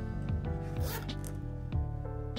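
Background music, with a short rasp of a small coin pouch's zipper being pulled about halfway through.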